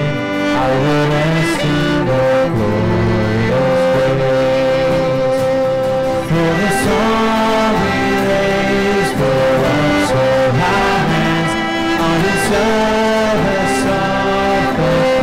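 A congregation singing a hymn in held, steady notes with instrumental accompaniment.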